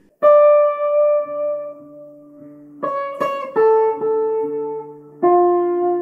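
Electric guitar playing slow single notes one at a time, each left to ring out, with a low held drone note underneath. It is an unmetered, Indian-style alap that sounds each note of a mode in turn, and it sounds very vocal.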